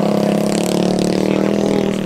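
A minibike's small engine running at a steady, held pitch, which dips slightly in the second half.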